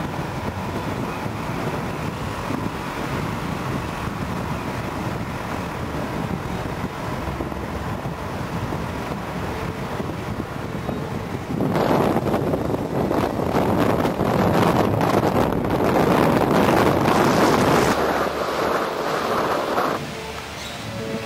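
Steady road and engine noise from a vehicle travelling along an expressway. About twelve seconds in it gives way to louder, gusting wind on the microphone.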